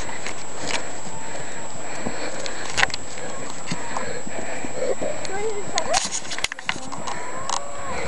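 A herd of bulls coming down a muddy hill track, their hooves knocking irregularly over a steady background rush. A few short gliding calls come in the middle and again near the end.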